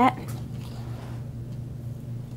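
Steady low hum of the room, with a faint soft scrape partway through.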